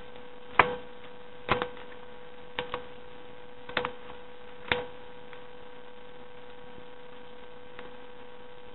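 Scissors snipping through folded paper: about five short, crisp snips in the first five seconds, one of them a quick double. A steady electrical hum runs underneath.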